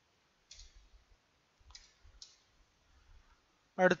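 Three faint clicks at a computer while a document is being edited, spread over about two seconds. A man's voice begins just before the end.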